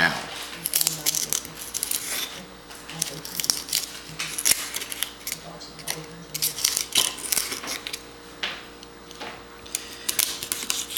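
Paring knife scraping and cutting along the inside of a geoduck clam's shell to free the body, a run of short, irregular scraping strokes.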